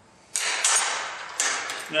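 Steel welding clamps clanking against each other and the metal table as they are handled: two sharp clanks about a second apart, each ringing briefly.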